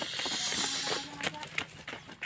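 A loud hiss that swells and fades within about the first second.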